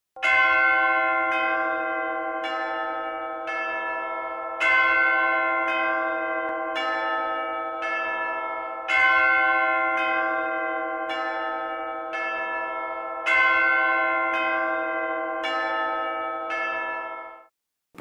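A peal of bells struck about once a second, sixteen strokes in four groups of four. The first stroke of each group is the loudest, and each rings on into the next. The ringing cuts off just before speech begins.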